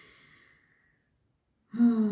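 A faint breath out, fading away within about half a second, followed by silence; a woman's voice starts near the end.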